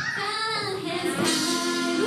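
Girls' idol group singing a pop song over a backing track, with a long held note in the second half.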